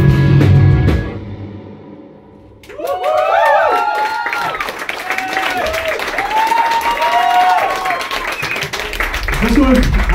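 A live metal band's song ends about a second in, its last chord fading away, then the club audience cheers with whoops, shouts and clapping for several seconds. Near the end a loud low hum comes in from the stage PA along with talk.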